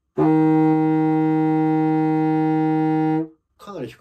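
A contrabassoon holds one steady E-flat for about three seconds, played with an alternate fingering (middle and ring fingers plus the Es key and the top key) to get a note that is hard to produce with the current reed. A man starts speaking near the end.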